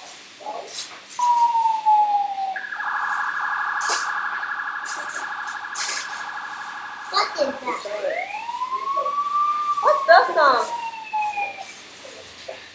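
Electronic siren sounds from a battery-powered toy emergency vehicle: a short falling tone, then a few seconds of fast warbling electronic beeps, then a slow rising-and-falling wail. Light clicks of plastic toys being handled come in between.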